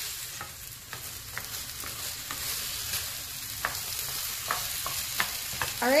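Rice toasting in hot olive oil in a frying pan, sizzling steadily, with scattered short scrapes and taps of a spatula as it is stirred.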